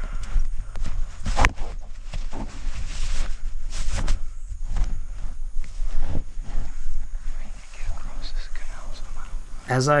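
Footsteps through tall grass and the rustle of a leafy camouflage suit brushing against it, in quick irregular crunches and swishes, over a low rumble on the body-worn microphone. Narration begins right at the end.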